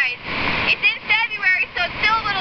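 A woman talking, with a faint steady rush of river water underneath.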